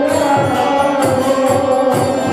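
Devotional kirtan chant: a man sings a mantra over a harmonium's sustained reed chords, with a steady beat of hand percussion.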